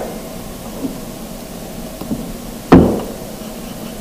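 A single sharp knock on the desk about two-thirds of the way in, dying away quickly, against a faint steady hiss.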